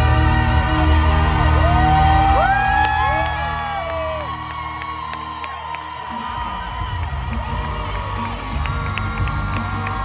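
Live band music with strong bass, heard from the audience, with the crowd whooping and cheering. The band's low end drops away about six seconds in, leaving the crowd noise and lighter playing.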